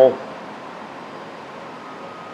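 Steady, faint hiss of shop room tone, with no engine running.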